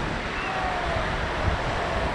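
Sea surf breaking on a sandy shore, a steady rush of waves with wind buffeting the microphone.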